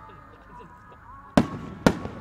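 Aerial fireworks going off: two loud, sharp bangs about half a second apart, a little over halfway through. Under them, faint steady musical tones play from the show's soundtrack.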